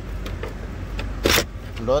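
A hammer claw prying a plastic interior trim panel off its clips, with a short, loud burst of noise about a second and a quarter in as the panel comes loose, over a steady low hum.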